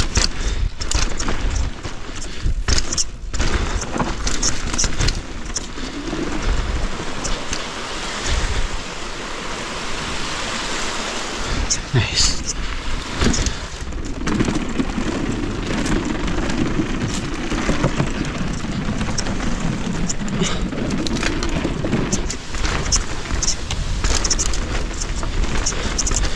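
Rocky Mountain Maiden downhill mountain bike ridden fast down a rough trail: tyres rumbling over dirt and rock, the bike clattering and knocking over bumps, with wind buffeting the camera microphone. From about 14 s to 22 s a steadier low hum as the tyres roll along a wooden boardwalk.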